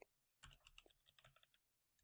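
Faint, quick typing on a computer keyboard, a run of soft key clicks that stops shortly before the end.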